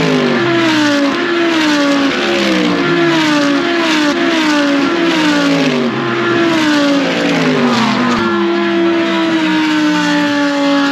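GT race cars passing at speed, loud. Their engine notes keep sliding down in pitch and jumping back up again about once a second, then settle into one longer, slowly falling note near the end.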